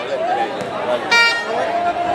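A single short horn toot, about a third of a second long, a little past the middle, over background voices.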